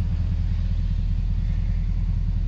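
Ford 6.7 L Power Stroke V8 turbo-diesel idling steadily, a low even rumble heard from inside the truck's cab.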